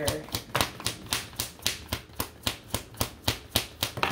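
A tarot deck being shuffled by hand, the cards slapping together in a steady rhythm of about four strokes a second.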